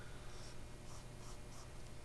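Faint rubbing swish of a short-bristled flat (bright) paintbrush laying a short stroke of acrylic paint on primed cardboard.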